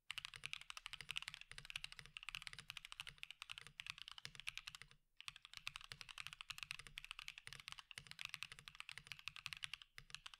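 Fast continuous typing on a CannonKeys Cerberus aluminum mechanical keyboard with KeyBay W1 Black Diamond switches, an FR4 plate and PBT keycaps. The sound is clacky and somewhat hollow, with no case or plate foam inside. There is a short break in the keystrokes about five seconds in.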